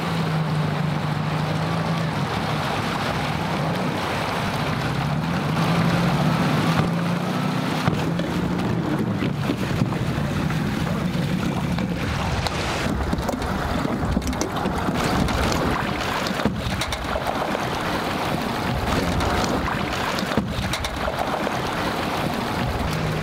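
Personal watercraft (jet ski) engines running at low speed on the water, the low engine note coming and going, with wind on the microphone.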